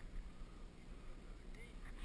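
Low rumble of wind and handling noise on a handheld camera's microphone as it swings, with a faint short chirp near the end.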